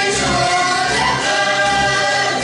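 Hungarian citera (table zither) ensemble strumming a folk tune together, with the players singing along in unison.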